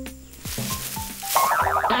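Cartoon sound effects over background music: a short whoosh about half a second in, then a loud warbling, wobbling effect near the end.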